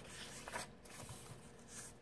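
Faint rustle of a picture book's paper page being turned.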